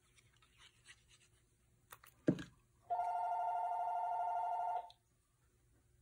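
A single knock a little over two seconds in, then a steady electronic tone, two close pitches held together, sounding for about two seconds and cutting off abruptly.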